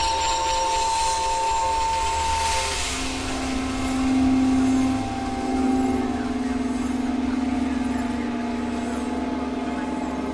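Contemporary chamber ensemble with electronics playing a sustained, drone-like passage: a high held note that stops about three seconds in, then a lower held note, over a grainy hiss that swells briefly just before the change.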